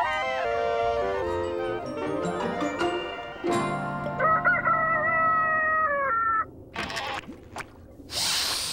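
Clarinets playing a stepped melody together for about three and a half seconds until the music breaks off. Then a rooster crows once, a held call of about two seconds with a wavering pitch, the cartoon's cue for morning.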